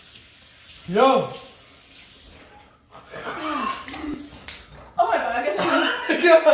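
People's voices: a short rising-and-falling vocal exclamation about a second in, then talk and chuckling from about three seconds on.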